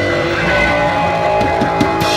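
Punk rock band playing live and loud: electric bass guitar and drum kit with cymbals, in an instrumental stretch of a fast punk song.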